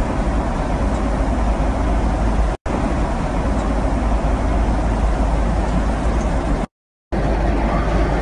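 Steady airliner cabin noise in flight: an even, loud rumble and rush of air with a deep low end. It cuts out for an instant about two and a half seconds in, and for about half a second near the end, where the clips are joined.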